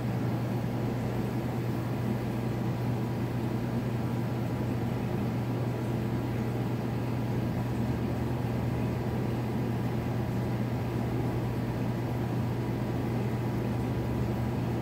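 Steady low mechanical hum with a constant wash of noise, unchanging throughout.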